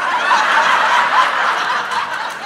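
A comedy club audience laughing loudly, the laughter breaking out all at once.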